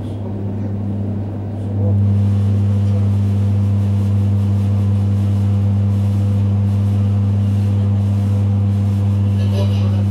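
ED9E electric multiple unit running, heard from inside the passenger car: a steady, deep electric hum over rolling noise. The hum steps up in loudness about two seconds in.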